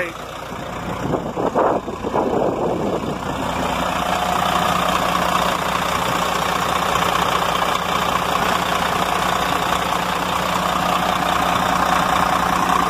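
Caterpillar inline-six diesel truck engine idling steadily, heard up close in the open engine bay.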